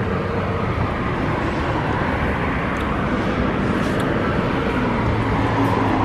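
Steady wash of road traffic noise from vehicles on the street, holding at an even level for the whole stretch, with a faint low engine hum near the end.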